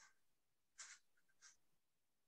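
Near silence on a webinar audio feed, with two faint, brief hissy sounds about one and one and a half seconds in.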